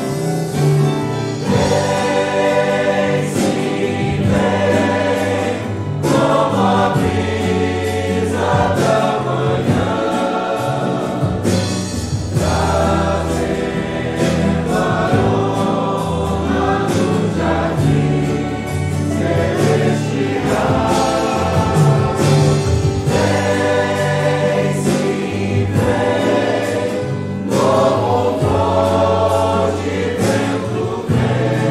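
Congregation singing a Portuguese hymn in unison, with instrumental accompaniment carrying steady low notes under the voices.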